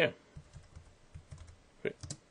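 Computer keyboard keystrokes: a few faint taps, then a sharper key press near the end as a command is entered.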